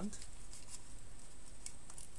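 Faint rustling of a clear plastic bag holding a coiled LED strip as it is turned in the hands, with a few soft ticks.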